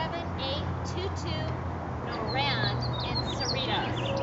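Small songbirds chirping and twittering in many short, quickly rising and falling notes, more of them in the second half, over a steady low hum.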